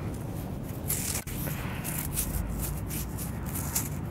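Fingers scraping and sifting through coarse sand and gravel to pick out a buried coin: a run of short, irregular gritty scrapes with one sharp click about a second in.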